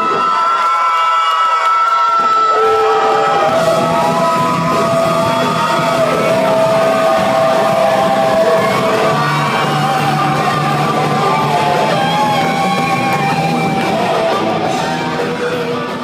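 Rock band playing: a male singer shouting and singing over electric guitar and drums, the bass end of the band coming in about two seconds in.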